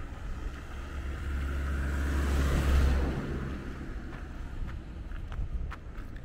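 A car passing by on a nearby road: its low rumble and tyre hiss swell to a peak about two and a half seconds in, then fade away.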